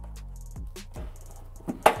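Background music with a steady beat, and near the end a single sharp plastic click as a push-pin retaining clip is pried out of a foam bumper crash pad with a plastic trim removal tool.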